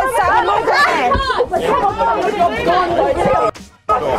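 Several people's raised voices talking over one another, breaking off about three and a half seconds in.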